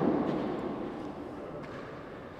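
Reverberant room noise of an indoor handball court, slowly fading, with a couple of faint taps.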